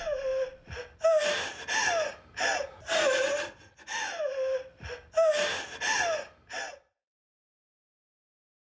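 A person gasping for breath in a rapid series of short, voiced, breathy gasps. The gasps stop abruptly about seven seconds in.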